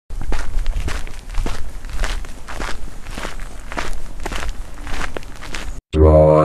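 Footsteps sound effect: a steady run of steps, about two or three a second, over a noisy background. It cuts off shortly before the end.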